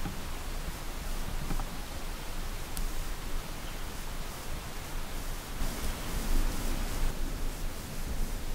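Steady outdoor background noise: an even hiss with a low rumble underneath and a faint click about three seconds in, with no distinct sound event.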